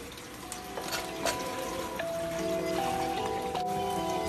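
Light background music of held notes that step from pitch to pitch, over faint running water and a few clinks of dishes being washed in a kitchen sink.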